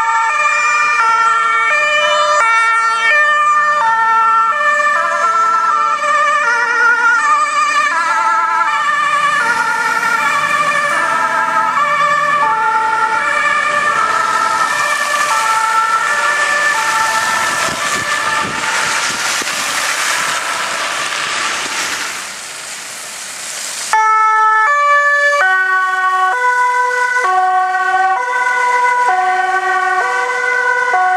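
Several Dutch two-tone emergency sirens from fire engines and police cars sound together, each alternating between two notes and out of step with the others. A loud rushing noise swells over them in the middle. After a cut near the end, a single police car's two-tone siren steps back and forth between its two notes.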